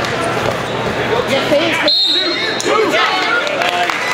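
Coaches and spectators shouting over a wrestling bout in a gym, with dull thuds of the wrestlers on the mat. About halfway through, a high steady tone comes in and holds for about two seconds.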